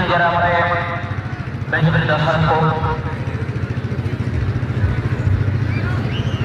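A man's voice speaking Hindi in two stretches in the first half, over a steady low mechanical drone.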